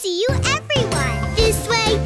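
Children's song: a cartoon character's voice singing the lyrics over bouncy backing music with chiming, jingly tones, opening with a quick swooping pitch.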